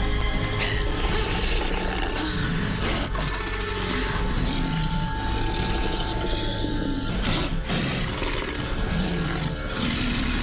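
Tense background music with a werewolf-like beast growling over it.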